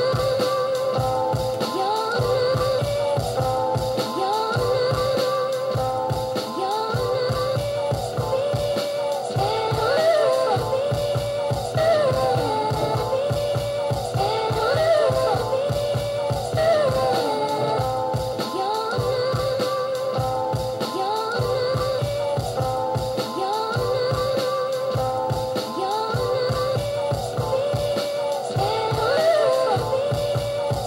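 Finished boom-bap hip-hop beat playing back from an Akai MPC 1000: a looped soul sample with singing over a steady, repeating drum pattern.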